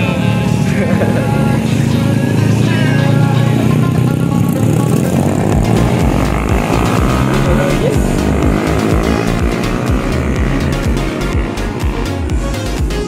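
Motorcycle engines revving as the bikes pull away one after another, mixed with background music that has a steady beat and takes over from about halfway.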